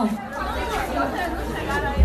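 Voices chattering in a crowded bar, over a low steady hum that comes in about half a second in.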